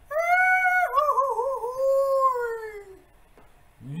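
A long wailing cry, held steady for under a second, then wavering and sliding down in pitch until it fades out about three seconds in.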